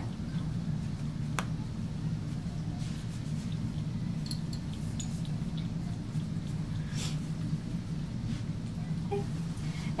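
A towel patted and pressed against the face, giving a few faint soft taps and rustles over a steady low hum of room noise.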